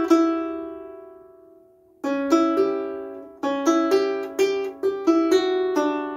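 Harp strings plucked by hand in a slow demonstration phrase. The opening notes ring out and fade for about two seconds, then new plucks start, followed by a run of quick plucked notes, several of them sounded in pairs.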